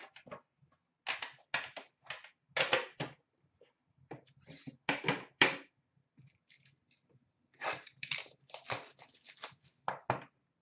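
Hands handling metal trading-card tins and their packaging: a string of short rustles, scrapes and light knocks, coming in clusters with brief pauses.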